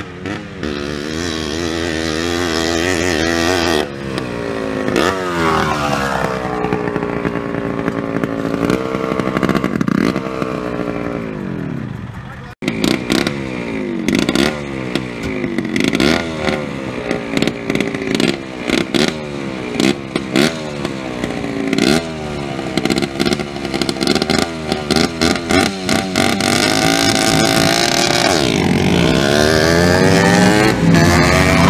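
Yamaha Blaster quad's two-stroke engine revving hard, its pitch sweeping up and down again and again, over the lower steady drone of a Ford 7.3 IDI diesel pickup. There is a sudden break about twelve seconds in. After it the revs come as quick repeated blips, roughly one a second.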